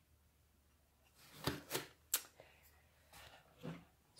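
Handling noise: a few sharp knocks and clicks with soft rustling, starting about a second in, as objects are moved by hand and the camera view shifts.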